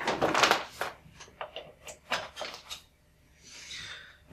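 Power cable being handled and plugged into a tabletop power outlet: a cluster of clicks and rattles in the first second, then a few lighter taps around two seconds in.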